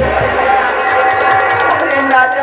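Live nautanki folk-theatre music: a held melody over a steady drum and percussion beat of about four strokes a second, with a heavy drum stroke at the start.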